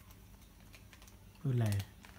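A few faint clicks and crinkles from a plastic zip-top bag being handled and pulled open. A short spoken phrase about one and a half seconds in is the loudest sound.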